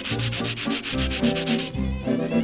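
Rapid rhythmic scraping, about ten strokes a second, a comic effect standing for an Eskimo's nose-rubbing kiss, over soft dance-band accompaniment; the scraping stops shortly before the end.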